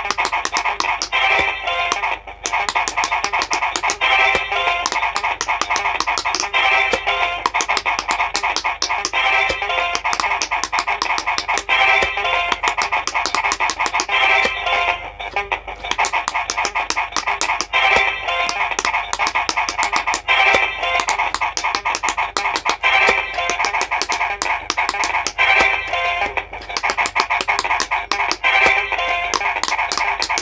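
A looping electronic tune with a phrase that repeats about every two and a half seconds, over rapid, dense clicking of the buttons of an electronic quick-push pop-it game being pressed.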